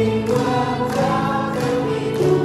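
A small mixed choir of men's and women's voices singing a hymn in the Iu Mien language, with piano accompaniment, in held, steady notes.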